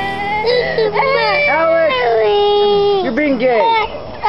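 A toddler crying in a run of wavering wails and sobs that break off and start again.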